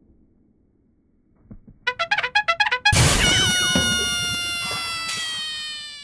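Brass-band style comic sound effect: a fast run of short notes, then one long held note that slowly sags in pitch and fades out.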